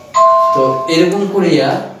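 A loud chime-like tone that starts suddenly, with two steady pitches sounding together for about a second before stopping. A man's voice comes in over it.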